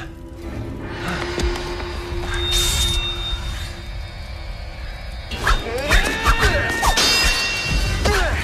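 Film soundtrack music: a held low tone for about five seconds, then louder, busier action music with sharp hits from about five seconds in.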